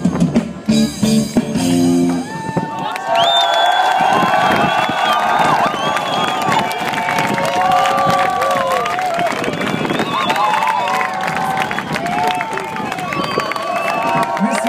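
A live band's song ending about two and a half seconds in. It gives way to a crowd cheering, whooping and clapping.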